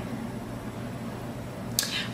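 A pause in speech with steady room noise in a small room, and a short intake of breath near the end.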